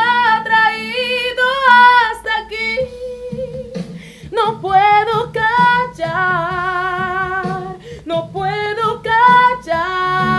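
A woman sings a Spanish-language Christian worship song unaccompanied or nearly so, in phrases with short breaths between them. Several notes are held with a clear vibrato.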